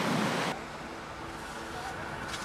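Surf and wind noise from the beach, cutting off suddenly about half a second in to a quieter, steady low background hum.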